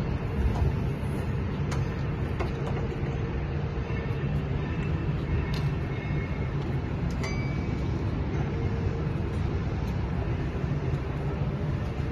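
Tractor diesel engine idling steadily, with a few light knocks and clicks as someone climbs into the cab.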